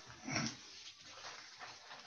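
A person briefly clears their throat with a short grunt about half a second in, heard over a video-call connection, then faint background hiss.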